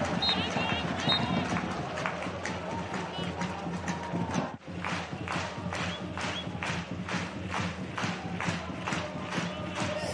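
Football stadium crowd noise. After a short break about halfway through, supporters clap in a steady rhythm, roughly two to three claps a second.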